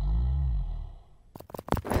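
Sound effects for an animated logo intro. A deep, low sound rises and falls in pitch for about a second. About a second and a half in, a rapid run of sharp hits like machine-gun fire starts.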